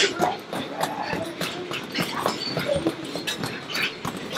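Indistinct voices with scattered knocks and thuds, with no one clear sound standing out.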